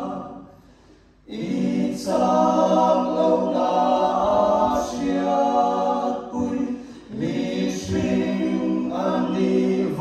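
A cappella vocal group of mixed male and female voices singing in harmony. The voices die away just after the start, pause for about a second, then come back in together, with a brief dip again about seven seconds in.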